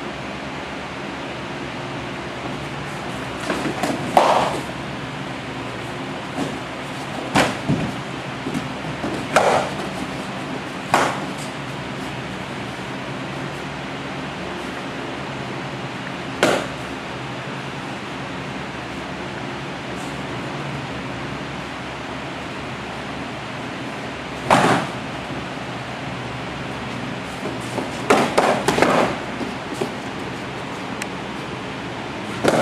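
Sparring sticks striking during stick-fighting sparring: sharp hits every few seconds, with a quick flurry about four seconds in, a long gap in the middle and another flurry near the end, over a steady hiss.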